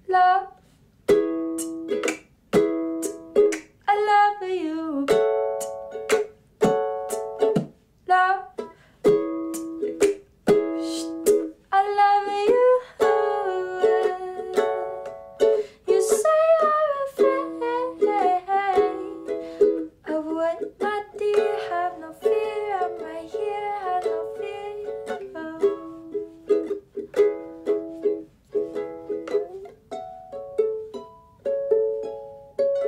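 Ukulele strummed in short, clipped chords, with a woman's voice singing in gliding lines over it without clear words, mainly through the middle.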